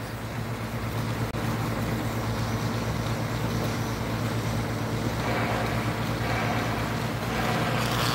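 Submerged arc welding machine running: a steady low hum with an even hiss over it, the hiss growing brighter near the end.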